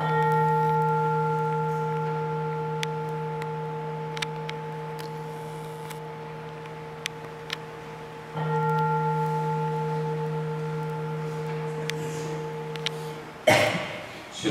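A consecration bell struck twice, about eight seconds apart, each stroke ringing on with a low hum and slowly fading as the chalice is elevated at Mass.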